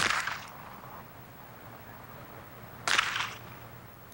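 Two handgun shots at a target, about three seconds apart: each a sharp crack that rings off for about half a second, over a faint low hum.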